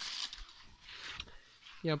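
Soft rustling and brushing of large leaves against the phone, in short hissy spurts, with a man's voice starting near the end.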